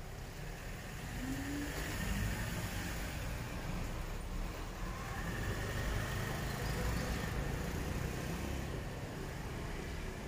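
Road traffic going by: a low rumble of engine and tyre noise that grows louder about two seconds in and then holds steady.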